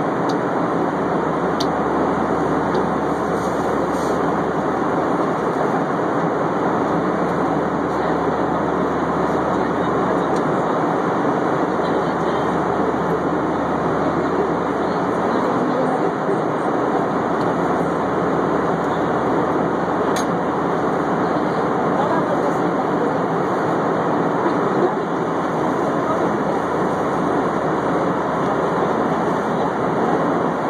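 Steady cabin noise of an airliner in flight: the even rush of the engines and airflow heard from inside the passenger cabin.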